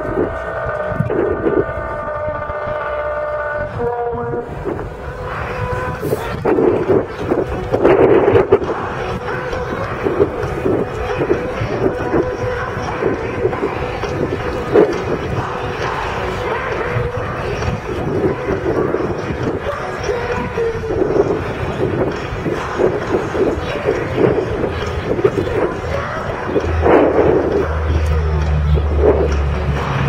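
Lockheed C-130 Hercules with four Allison T56 turboprops, droning steadily at a distance, with wind noise on the microphone. Near the end a deeper, louder propeller drone comes in.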